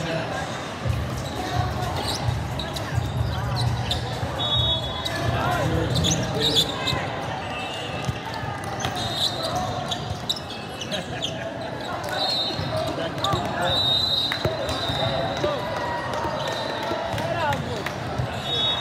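Indoor volleyball rally on a hard sport court in a large hall: repeated hits and ball bounces, short high squeaks of sneakers, and voices of players and spectators.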